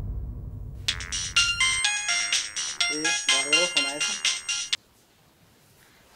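Mobile phone ringtone: a bright electronic melody with a voice singing over it, starting about a second in and cutting off abruptly after about four seconds as the call is answered.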